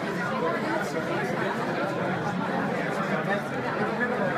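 Crowd chatter: many people talking at once in a packed hall, a steady babble of overlapping conversations.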